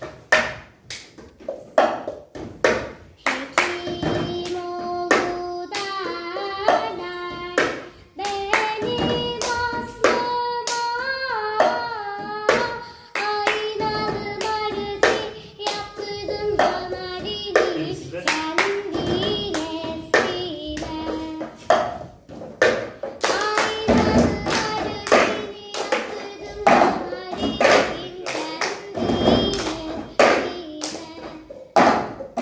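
Cup-rhythm pattern of cups tapped and slapped on a wooden desk, with hand claps, played in a regular beat along with a recorded Turkish folk song (türkü). A sung melody runs over the taps from about four seconds in until about two-thirds of the way through, after which the taps and claps carry on mostly alone.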